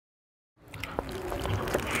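Silence for about half a second, then outdoor background noise fades in: a steady low rumble with scattered small clicks, growing slowly louder.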